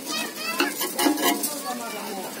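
Takoyaki frying in a multi-well takoyaki griddle: a steady sizzle, with a few sharp scraping clicks against the pan about half a second to a second and a half in.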